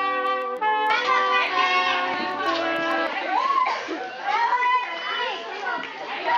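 Brass instrumental music for about the first second, then a cut to a group of children and teenagers calling and shouting, with the low notes of the music carrying on faintly underneath for a couple of seconds.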